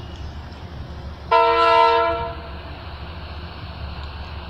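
A commuter train's horn sounds one blast about a second long, a little over a second in, over the train's steady low rumble.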